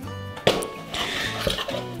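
Cardboard box opened by hand: a sharp snap about half a second in, then rustling of cardboard flaps and paper, over background music.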